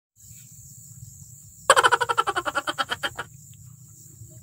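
A high-pitched, rapidly pulsing voice, about ten pulses a second, starts about a second and a half in and lasts about a second and a half, thinning out as it ends.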